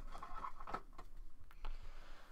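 Trading cards and a foil pack wrapper being handled: soft rustling with two light ticks.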